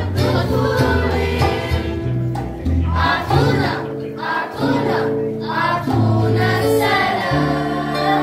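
A group of girls singing a song together, over a low instrumental accompaniment whose notes change about once a second.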